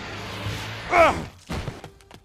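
Cartoon sound effects for a thrown water balloon: a rushing whoosh as it flies, a short cry that falls steeply in pitch about a second in, then a brief thud shortly after, over background music.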